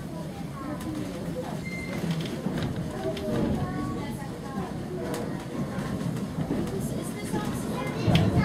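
Faint chatter of passengers' voices inside a moving railway carriage, over the steady low rumble of the train running on the track, with a few short clicks.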